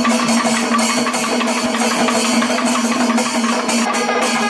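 Traditional Kerala panchavadyam temple ensemble playing: curved kombu horns hold a loud, steady droning note over continual drum and cymbal strokes.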